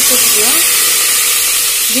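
Green herb leaves sizzling in hot oil just after being dropped into the pot: a loud, steady hiss of frying.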